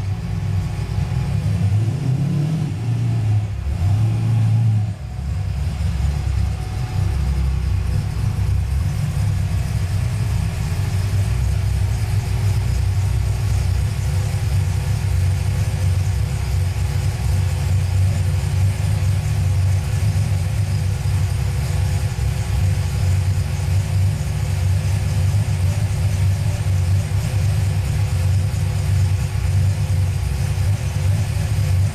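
V8 engine of a Miata swap idling, with a brief rise and fall of revs a few seconds in and a short dip in level near the five-second mark, then a steady idle.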